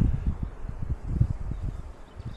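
Wind buffeting the microphone: an uneven low rumble that rises and falls in short gusts.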